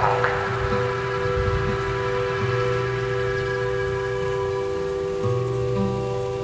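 Steady falling rain under slow, held musical chords in an ambient passage of a black metal song, with a new chord coming in about five seconds in.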